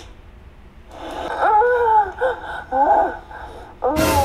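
A woman's high-pitched moaning from a porn video, played through a phone's speaker, starting about a second in and lasting a couple of seconds, with a sudden burst of noise and voice right at the end.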